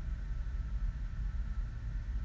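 Steady low background rumble with a faint high hum and no distinct event: room tone.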